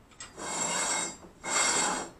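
Two rough scraping rubs, the first under a second long and the second about half a second, from a plate being handled and slid against a surface.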